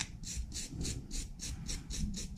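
Hand wire brush scrubbing a cast aluminium skull pendant, with quick back-and-forth strokes about four a second making a rhythmic scratching.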